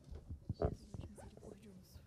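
Handling noise from a handheld microphone: a few soft knocks and rubs over low room noise as it is picked up and brought to the mouth.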